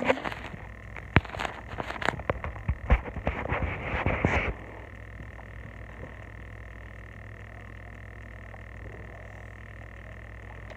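Crackling, clicking handling noise close to the microphone for about four and a half seconds, then only a steady low background hum with a faint high whine.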